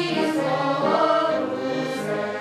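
A children's choir singing together, holding notes that change in pitch every half second or so.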